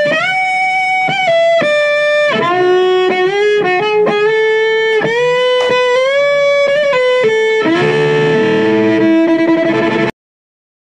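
Electric baseball bat violin, bowed and amplified, playing a single-note melody with sliding changes of pitch between held notes. Near the end it moves to a fuller sustained chord, then cuts off abruptly.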